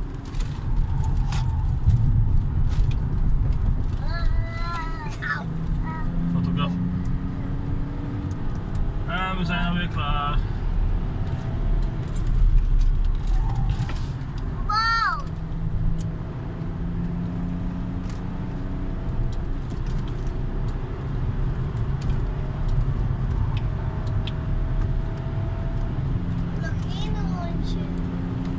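Car engine and road noise heard inside the cabin while driving at speed on a race circuit, the engine note shifting in pitch several times with throttle and gear changes.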